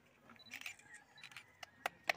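A few faint, sharp clicks over a quiet background murmur, the loudest near the end.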